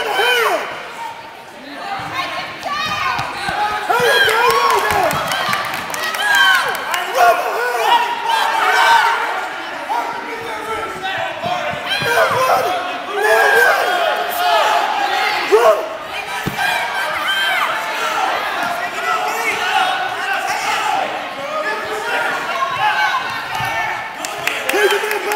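Many spectators shouting encouragement at once in a gym hall, voices overlapping and echoing, with a few sharp thumps among them.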